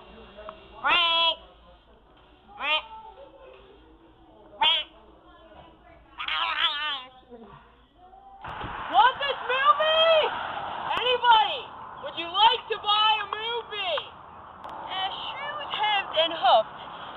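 Young voices without clear words: short separate bursts of laughter and squeals. About halfway through, a sudden cut brings in a steady rushing noise, with denser laughing and shouting over it.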